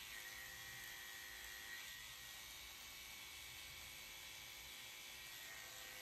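Electric dog grooming clippers running with a faint, steady buzz while trimming the hair at the base of a poodle puppy's tail.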